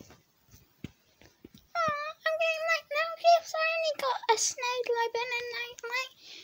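A few faint handling clicks, then, from about two seconds in, a child's high-pitched voice in short, fairly level held notes.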